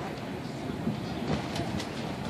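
Outdoor background noise: a steady low rumble with faint distant voices and a few light clicks about one and a half seconds in.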